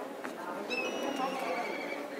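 Background chatter of voices. About two-thirds of a second in, a high, drawn-out whistled call starts over it and holds for more than a second, its pitch falling slightly.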